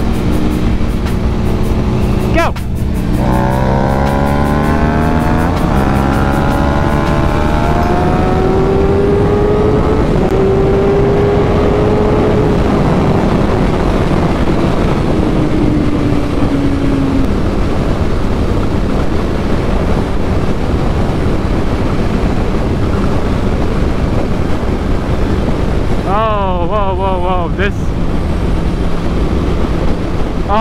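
Suzuki GSX-R750's inline-four engine pulling hard at highway speed. There is a break in the engine note about two and a half seconds in, then the note climbs steadily for several seconds as the bike accelerates to about 100 mph. After that, wind rush over the rider's microphone.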